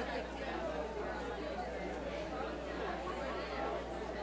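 Many people talking at once in pairs and small groups: a steady babble of overlapping conversations, with no single voice standing out, over a constant low hum.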